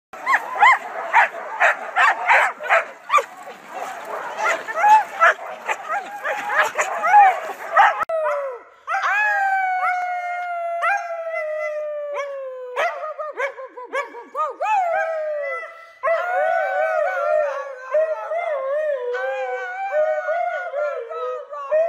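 A team of harnessed sled huskies barking rapidly over one another. Then a husky howls in long calls that slide down in pitch, and from about 16 s a woman howls along with it, the two voices overlapping.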